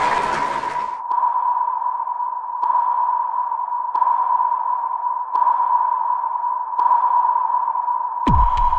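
Sonar ping sound effect: a steady tone with a sharp ping about every second and a half, five pings in all.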